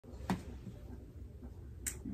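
Two short sharp clicks about a second and a half apart, over a faint low room hum.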